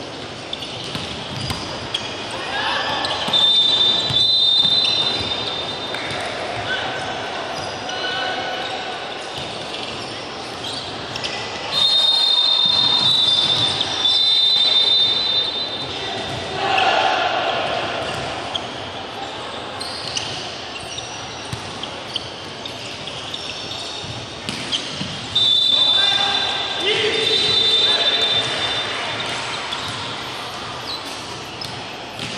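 Volleyball match in a reverberant gym: shrill whistle blasts come three times, at about 4, 13 and 27 seconds, each with a burst of shouting and cheering from players and spectators. The ball is struck and bounces between them.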